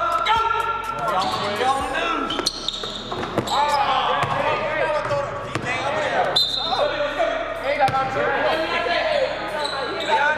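Basketballs bouncing on a hardwood gym floor during practice, a scatter of sharp bounces amid players' voices, echoing in a large gym.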